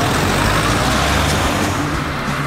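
Two cars driving past close by on a road, a Renault Scénic people carrier followed by a silver saloon: low engine hum and tyre noise on the asphalt, swelling in the first second as they go by.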